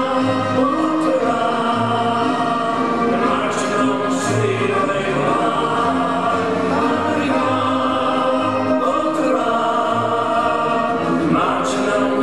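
Recorded brass-and-reed band music with a group of voices singing, steady and continuous, with a recurring bass line underneath.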